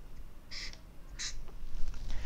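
Felt-tip marker squeaking across flip-chart paper in two short strokes, about half a second and a second and a quarter in.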